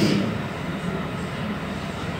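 A film excerpt's soundtrack playing over a lecture hall's speakers: a steady rumbling noise, a little louder at the very start.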